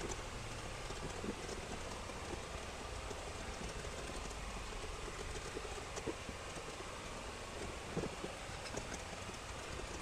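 Faint steady background hiss of room tone, with a few soft, brief clicks scattered through it.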